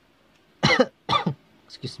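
A person coughs twice, about half a second apart.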